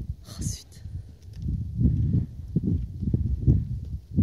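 Horse trotting on arena sand: muffled, irregular low thuds of hooves with some rumble, and a short hiss about half a second in.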